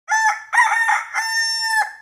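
A rooster crowing once: a few short broken notes, then a long held note that drops away near the end.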